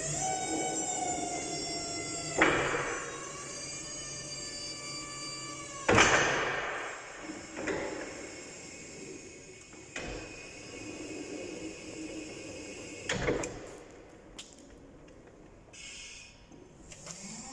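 Linde E50L electric forklift's hydraulic lift pump motor whining steadily as the mast raises, with loud clunks about two and a half and six seconds in. After that the whine gives way to a quieter hydraulic hiss as the mast comes down, with another clunk near the end.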